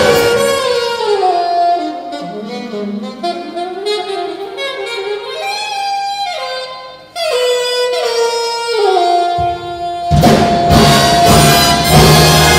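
Unaccompanied saxophone cadenza: a single saxophone plays a free run of notes, sliding between pitches, with no band behind it. About ten seconds in the big band comes back with loud drum and ensemble hits under a long held saxophone note.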